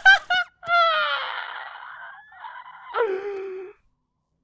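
A voice shouts in a few short bursts, then lets out a long cry that falls away over about a second. A second, lower cry follows about three seconds in and cuts off suddenly, with a hiss of noise under both.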